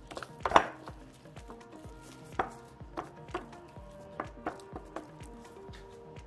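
Wooden spoon stirring and mashing thick sweet potato mash in a glass bowl: irregular soft knocks and scrapes against the glass, the loudest about half a second in.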